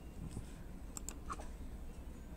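A few light clicks of a laptop's keys and mouse buttons, two close together about a second in and another shortly after.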